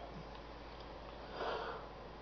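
A man sniffs once, briefly, about one and a half seconds in, over a faint steady hiss.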